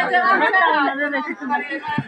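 Several people talking at once in casual conversation.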